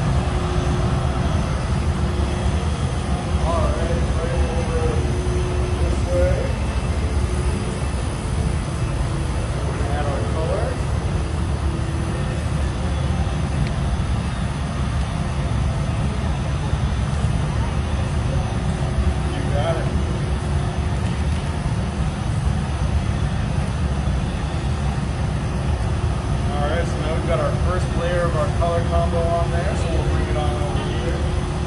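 Steady low roar of a glassblowing studio's gas furnaces and fans, with faint voices now and then.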